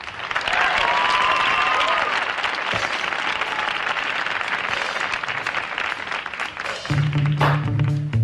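Studio audience applauding and cheering for a band, with a held voice-like cry over the clapping about a second in. About seven seconds in, the band starts playing with sustained low bass notes.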